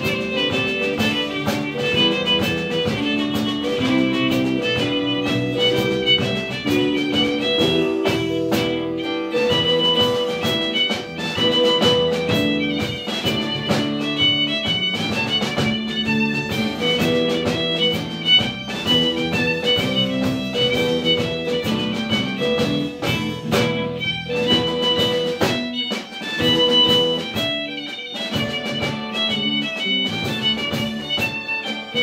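A live Celtic-folk band playing: bowed fiddle melody over strummed acoustic and electric guitars, electric bass and a drum kit.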